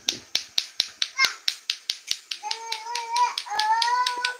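Sharp, evenly spaced clacks, about four to five a second, keep up a steady rhythm. From about halfway through, a high voice holds a long, steady sung note over them.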